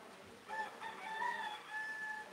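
A rooster crowing once: a single long call of several linked parts, starting about half a second in, heard at some distance.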